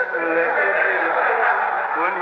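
A man's voice holding one drawn-out, wordless vocal sound, fairly steady in pitch, as a performer's comic noise.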